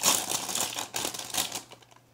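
Plastic cereal-box liner bag crinkling and crackling as it is pulled open by hand, a dense run of crackles loudest right at the start that thins out and dies away shortly before the end.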